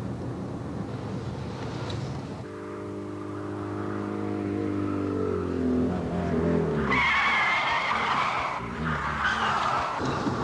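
Road vehicle engine running and revving, its pitch climbing about five seconds in, then tyres screeching loudly from about seven seconds on, over steady road noise.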